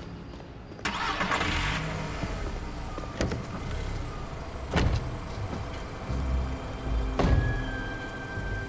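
A car's engine running with a steady low rumble. A sudden burst of noise comes about a second in, and two sharp knocks follow later.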